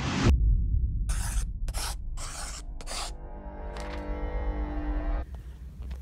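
Short logo-intro music sting: a deep bass hit, a few quick noise bursts, then a held synth chord that stops about five seconds in.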